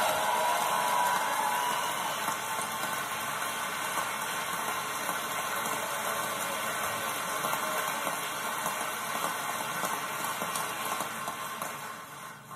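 Large conference-hall audience applauding steadily, fading out near the end. It is heard through a television's speaker.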